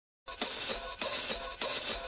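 A hi-hat keeping a steady beat, three strokes about 0.6 s apart, after a brief silence: the drum opening of a rock track.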